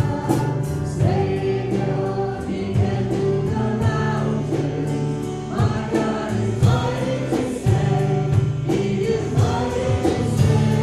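A church congregation and its worship singers singing a song together, with instrumental accompaniment and a light beat of percussion strokes.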